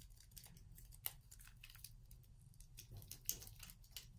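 Faint paper rustling and small crinkling clicks as an adhesive glue dot is peeled off its paper backing and pressed onto a paper strip.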